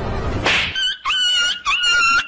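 A dog whining: several high, drawn-out cries held at a steady pitch, starting just under a second in after a brief rush of noise.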